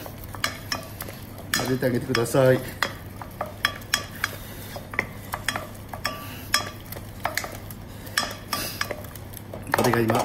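Wooden spatula beating thick choux paste in a stainless steel saucepan, with irregular knocks and scrapes against the pan's side as the eggs are worked into the dough.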